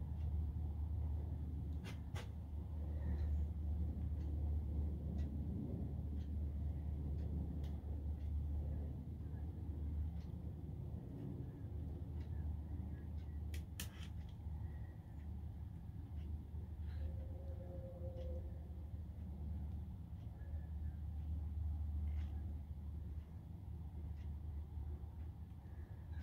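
A steady low hum of room background with a few faint, sharp clicks, one about two seconds in and another about halfway through.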